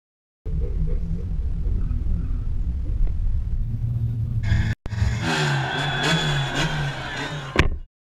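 Subaru WRX engine heard from inside the cabin. A low rumble runs for about four seconds, then a short break, then a brighter stretch with revs rising and falling. A sharp click comes just before the sound cuts off suddenly.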